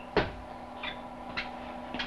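A single sharp knock just after the start, then a couple of faint clicks, over a low steady hum.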